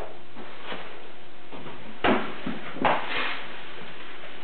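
Packaging rustling and a cardboard box being handled as a wrapped bass guitar is pulled out of it, with two louder rustles, about two seconds in and just before three seconds.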